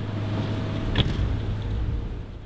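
Outdoor location sound: a steady low hum with a low rumble under it, and a single sharp click about a second in.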